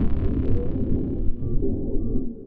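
Cinematic intro sound design: a deep rumbling drone with a few low held tones above it.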